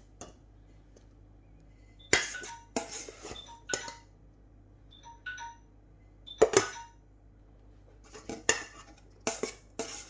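A metal spatula knocking and scraping against the rim and side of an aluminium pot as rice is spooned in. The sound is irregular sharp clinks with a short ring, in clusters about two to four seconds in, a loud one after about six seconds, and a run of several near the end.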